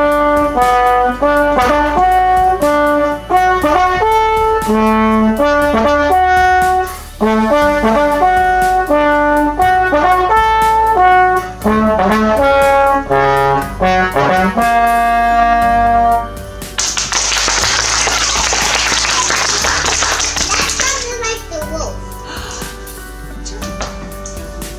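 Slide trombone played solo, a single melodic line of sustained notes moving up and down, ending on a held note about sixteen seconds in. It is followed by about four seconds of applause-like noise.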